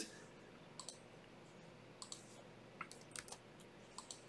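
A handful of faint, irregular keystrokes on a computer keyboard as a password is typed in, over near silence.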